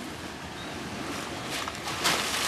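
Steady wind and lapping water noise, with a few faint splashes near the end.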